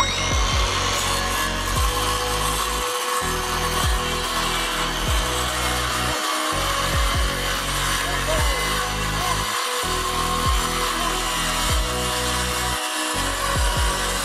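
DeWalt circular saw running steadily through a long straight cut in a plywood sheet, with background music playing underneath.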